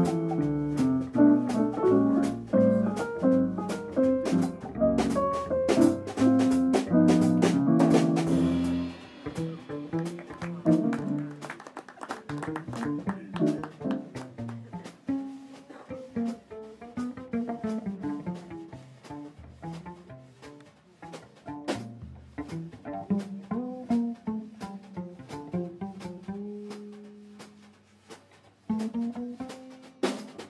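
Small jazz combo playing live: an electric keyboard plays dense chords over a plucked five-string cello bass line, with light cymbal ticks keeping time. About nine seconds in, the music drops in level and thins out, leaving mainly the plucked cello bass line with soft cymbal taps.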